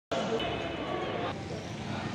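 Steady background din of a busy indoor public space, with indistinct voices mixed into it. The higher part of the din thins out a little past halfway.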